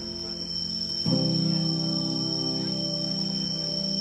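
A steady, high-pitched insect trill, typical of crickets, runs over background music of sustained low chords. A sweeping sound comes in about a second in.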